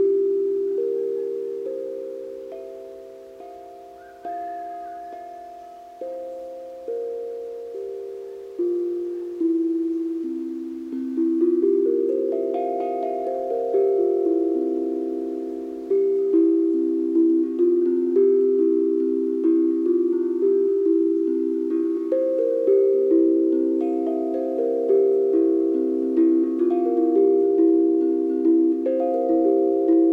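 Galvanized steel tank drum tuned to a C Hindu scale (C4 to F5), its tongues struck with woollen mallets: single ringing notes a second or two apart, each fading slowly, then after about ten seconds a quicker, steadier melody of overlapping notes played with both mallets.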